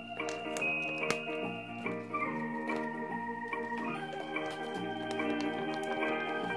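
Background music of sustained organ-like keyboard chords, changing every second or so.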